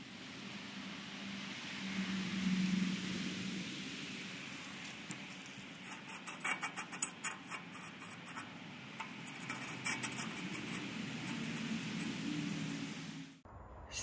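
Steady outdoor background noise with a low hum. From about five seconds in come a run of irregular small clicks and rustles of handling, as a gloved hand works a steel sleeve on the axle tube.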